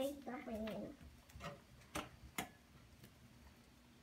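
A soft child's voice murmuring near the start, then a few short sharp clicks about half a second apart, then quiet.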